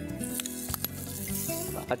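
Hot oil sizzling in a frying pan of tempered spices as boiled mashed potato is spooned in, with a few sharp clinks of a spoon against a steel bowl in the first second, over background music. The sizzle grows louder near the end.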